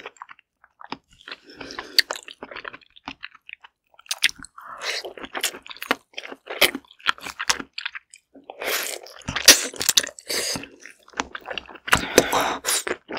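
Close-miked chewing of steamed whole Korean zucchini (aehobak): irregular wet mouth clicks and smacks. A fresh bite is taken about halfway through, and the chewing grows louder and busier after it.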